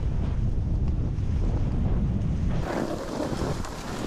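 Wind buffeting an action camera's microphone as a heavy, uneven low rumble, which changes abruptly about two and a half seconds in to a lighter hiss.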